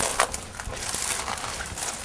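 Dry, brittle tumbleweed stems crackling and snapping as they are pushed and trodden through, a rapid irregular run of small crunches and clicks.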